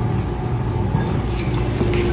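Steady low hum, with a faint metal clink about a second in as the tamped portafilter is handled.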